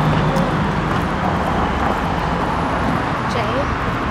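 Steady city street noise with a low traffic hum, and brief faint voices now and then.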